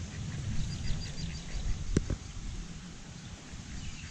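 Outdoor ambience by a pond: a low rumble of wind on the microphone, faint bird chirps about a second in, and a single sharp click about two seconds in.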